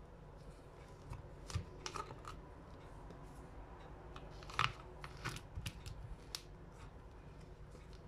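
Faint, scattered clicks and knocks of a plastic bottle and a pump dispenser being handled as the cap comes off and the pump is fitted and screwed on, with one sharper click a little past halfway.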